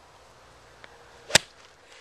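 A golf club striking a golf ball off the grass: one sharp click a little over a second in.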